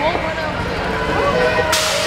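BMX start gate dropping: one sharp slap near the end, as the gate falls and the riders roll off it.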